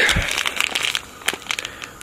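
A clear plastic bag holding a spark plug crinkling and crackling as it is handled. The crinkling is densest in the first second, then thins to scattered small crackles.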